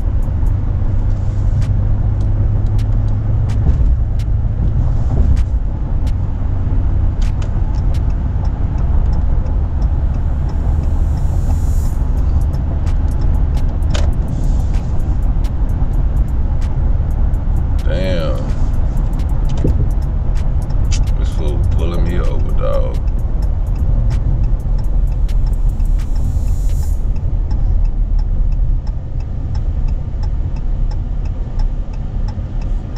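Steady low road and engine rumble inside a truck cab cruising at highway speed, about 76 mph. Brief wavering voice-like sounds come through twice, around the middle.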